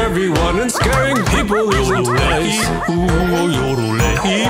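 A cartoon puppy's voice gives a quick string of short yips and barks over upbeat background music with a steady beat.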